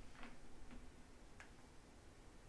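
Near silence: quiet room tone with three faint, irregularly spaced clicks.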